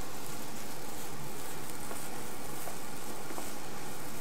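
Diced chicken and rice sizzling steadily in a hot pan, the wine having cooked off, with a few faint ticks as it is stirred with a wooden spoon.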